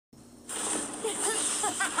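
A steady hissing, rushing sound effect comes in about half a second in, and a high-pitched voice begins speaking Spanish about a second later.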